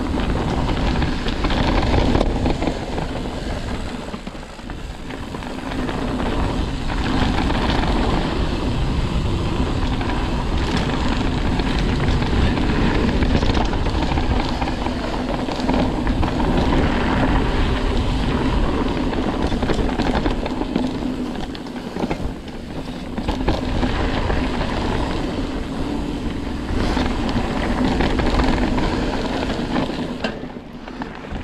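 Ibis Ripmo AF mountain bike rolling down a dirt singletrack: a steady rumble of tyres on the trail with frequent small rattles and knocks as the bike goes over bumps. It eases briefly twice.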